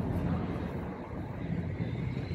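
Steady outdoor background noise: a low, even rumble with wind on the microphone.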